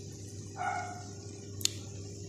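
A short, high-pitched animal whine about half a second long, then a sharp click about a second later, over a steady low hum.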